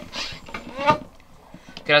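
A hand pump on a portable pressure shower tank is worked to push air in and build pressure, with a short airy hiss at the start. A brief voice sound comes about half a second in.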